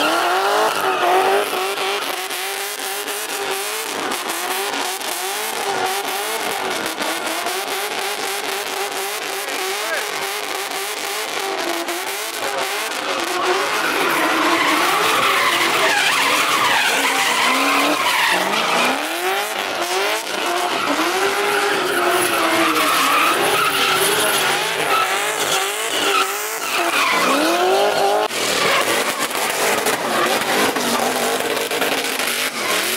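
Drift car engine revving up and down with the throttle as the car slides sideways, tyres squealing continuously on the asphalt.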